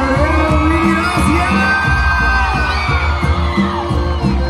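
Live band music with singing, loud and steady, as heard from within a concert audience.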